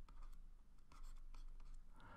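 Faint scratching and light tapping of a stylus writing on a pen tablet, a series of short strokes.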